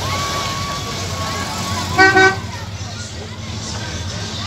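A car horn gives two short, loud honks in quick succession about two seconds in, over the low rumble of slow-passing car engines and spectators' chatter.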